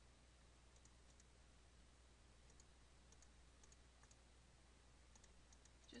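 Near silence with faint computer mouse clicks, mostly in quick press-and-release pairs every second or so, over a low steady hum.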